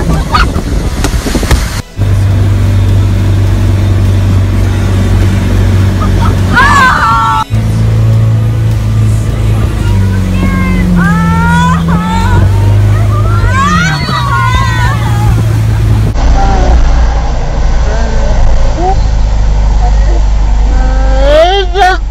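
A motorboat's engine drones steadily while towing, its pitch dropping once partway through, over wind and water noise. Voices call and shout over the engine, and a low rumble of wind and spray takes over near the end.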